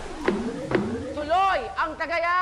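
A high-pitched voice calling out a drawn-out, wordless exclamation that swoops up and down, preceded by two short, sharp knocks in the first second.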